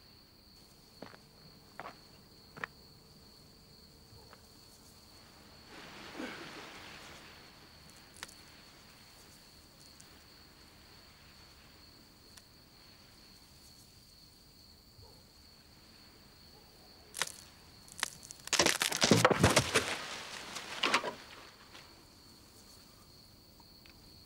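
Crickets chirping steadily in the night, with a few faint clicks. About eighteen seconds in comes a loud burst of rustling and cracking lasting a couple of seconds.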